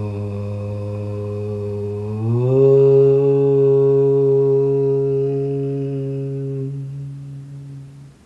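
A man chanting one long, held note, its pitch stepping up once about two seconds in and fading out near the end.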